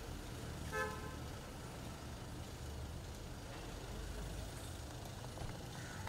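A car horn gives one short toot about a second in, over a steady low rumble of street traffic.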